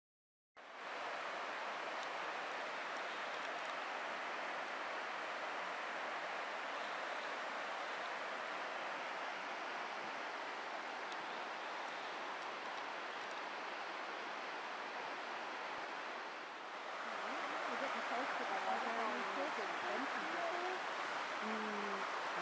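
Steady rush of creek water, starting abruptly about half a second in and growing a little louder later on, with faint voices over it in the last few seconds.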